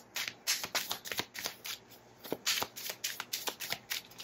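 A deck of tarot cards shuffled by hand, a run of quick, irregular clicks and rustles of card against card.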